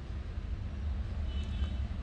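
A low, steady background rumble with no speech, and a faint high tone entering near the end.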